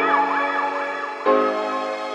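Background music: held synth chords under a lead line that slides up and down in pitch, with a louder chord change just past a second in.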